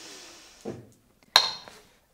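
A single sharp clink, ringing briefly, from the glass spray bottle knocking against a hard surface about two-thirds of the way in. Before it comes a soft breathy hiss and a short vocal sound.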